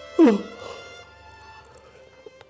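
Soft background music with sustained tones. Just after the start comes a brief, loud voice-like cry that falls in pitch.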